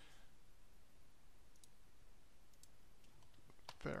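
A few faint, sparse computer mouse clicks over low background hiss, two of them close together near the end.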